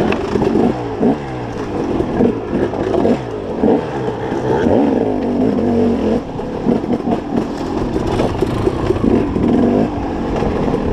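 Dirt bike engine revving up and dropping back again and again as the rider works the throttle and gears along a trail.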